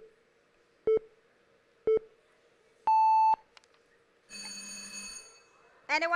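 Game-show countdown timer: three short beeps a second apart, then a longer, higher beep that marks the time running out. About a second later a contestant's electronic answer buzzer sounds for about a second.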